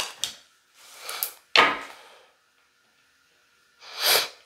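Tarot cards handled on a wooden tabletop: a few short rustles and soft knocks as a card is laid down and the deck is set aside, with quiet gaps between.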